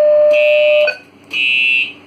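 Fire alarm horn-strobe on a Simplex 4010 panel sounding two harsh, high, loud bursts about half a second long and half a second apart. A steadier, lower alarm tone runs under the first burst and stops just before a second in. The horn goes quiet after the second burst.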